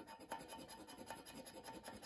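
Faint scraping of a round scratcher being rubbed over the silver scratch-off coating of a Monopoly Gold scratch card, in short uneven strokes.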